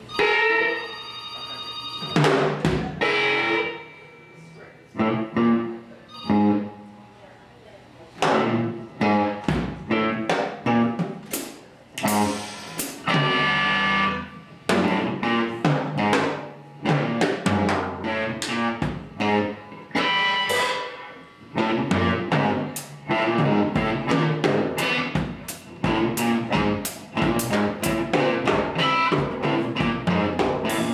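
Live band playing: a drum kit struck in loose, irregular hits and fills with cymbals, over electric guitar. The music starts abruptly, thins out for a few seconds, then grows dense with drum strikes.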